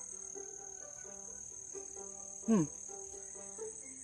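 A steady, high-pitched insect chorus, like crickets, runs unbroken beneath faint background music of plucked-string notes.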